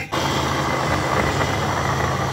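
Electric mini chopper's motor running steadily, a loud whir over a low hum, as it blends avocado and cream cheese in its glass bowl; it starts a moment in.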